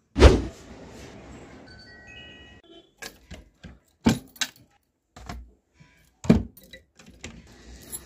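A bunch of keys jangling and a cupboard lock clicking as a key is worked in it, in a series of sharp clicks and rattles. A loud knock comes just after the start, and a short run of rising chime-like tones about two seconds in.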